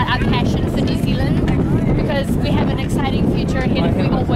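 Crowd chatter: several voices talking at once over a steady low rumble.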